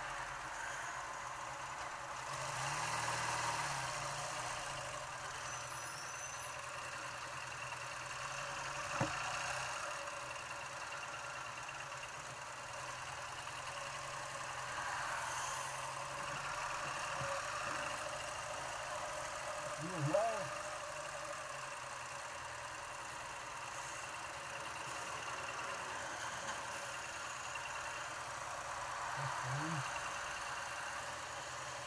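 Ural sidecar motorcycle's flat-twin engine idling and running at walking pace in slow traffic beside idling trucks, a steady engine sound throughout. A brief pitched sound, voice-like, cuts in about twenty seconds in.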